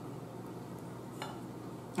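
Quiet room tone with one faint knock of tableware about a second in, as a dinner plate or fork is handled at the table.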